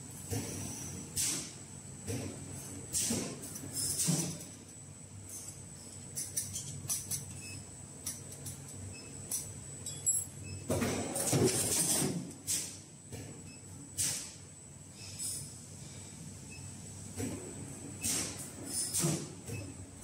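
Scattered metallic clinks and knocks of titanium strips being handled and set into forming tooling, over a faint steady high-pitched whine. A longer, louder noisy stretch comes about eleven seconds in.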